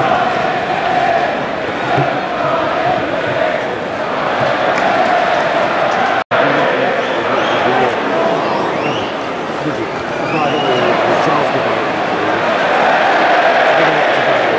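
Football stadium crowd singing and chanting, a dense wall of thousands of voices that holds steady. It breaks off for an instant about six seconds in where the recording is cut.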